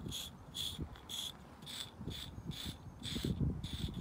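An insect, cricket-like, chirping steadily: short high chirps at one pitch, about two and a half a second. Under it runs low scuffing and rubbing from a grooming block against the horse's coat and muzzle, loudest about three seconds in.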